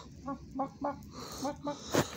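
Chicken-style clucking in short, quick clucks: three in the first second, then two more after a brief pause.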